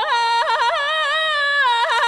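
A solo singing voice in background music, breaking quickly up and down between pitches in yodel-like flips, then holding a note that glides slowly downward.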